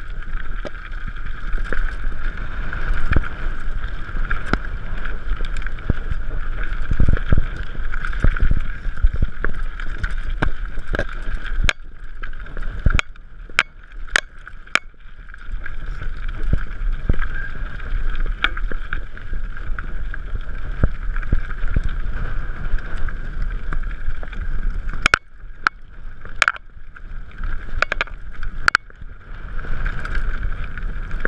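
Mountain bike riding fast down a rocky trail: steady wind rush and tyre rumble, broken by many sharp knocks and rattles as the bike hits stones, easing off for a few seconds around the middle and again near the end.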